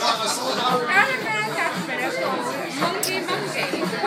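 Overlapping chatter of a group of people talking in a busy bar room, with a sharp click about three seconds in.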